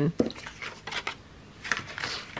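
Paper being handled: a long strip of printed paper rustling and sliding as it is picked up and moved, with a few soft clicks and a louder rustle near the end.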